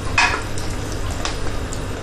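Wooden spatula scraping and pushing cooked, wet grated beetroot from a pressure-cooker pot into a mesh strainer. A louder scrape comes just after the start, then softer scraping and squishing, with a steady low hum underneath.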